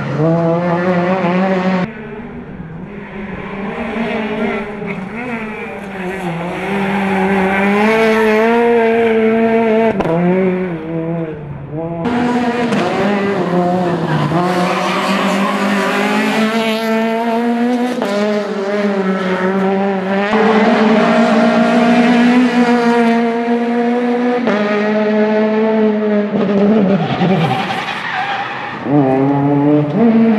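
Peugeot 208 rally car's engine at high revs, its pitch climbing and dropping again and again as the car accelerates, shifts and brakes through corners, with tyres squealing at times. The sound jumps abruptly several times where separate passes are cut together.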